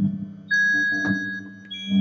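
Synthesized MIDI notes from a PC, triggered by a hand moving near a 360-degree proximity sensor, with pitch and loudness changing with the hand's distance and direction. A steady low note sounds throughout; a high note comes in sharply about half a second in and fades, and another high note starts near the end.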